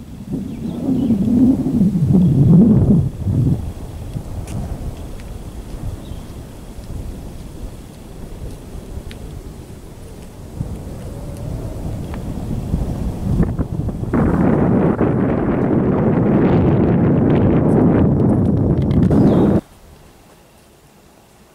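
Wind buffeting the camera microphone in loud, rumbling gusts: a strong gust early, a quieter spell, then a long, harsher gust from about fourteen seconds in that cuts off suddenly near the end.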